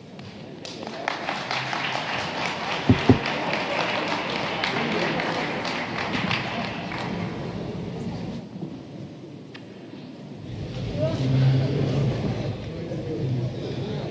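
Audience applauding, a dense spell of clapping that fades out about eight seconds in, followed by a murmur of voices in the hall. Two dull thumps stand out about three seconds in.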